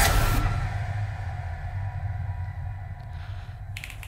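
Horror-trailer sound design: a loud hit cuts off about half a second in, leaving a low rumbling drone that slowly fades. A brief sharp sound comes near the end.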